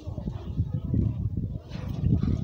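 Indistinct voices talking in the background, muffled under a heavy low rumble.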